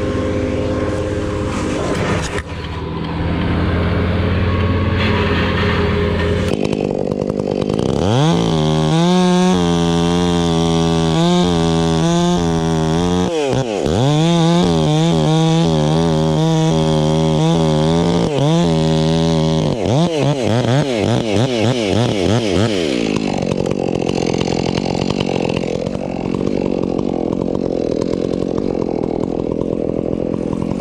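Two-stroke chainsaw revving up sharply about eight seconds in and running fast, its pitch sagging and recovering several times, then dropping back after about fifteen seconds. Before and after that, a steadier, lower engine drone.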